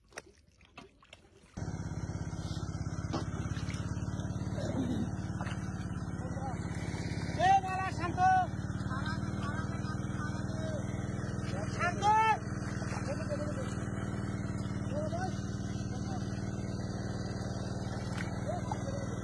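A steady engine drone with an even low hum, starting abruptly about a second and a half in and running on. Brief loud voice calls rise over it twice, about seven and a half seconds in and again about twelve seconds in.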